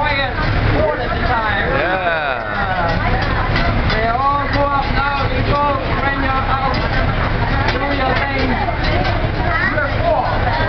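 Several people's voices talking and laughing over one another, over a steady low rumble, with a few faint clicks partway through.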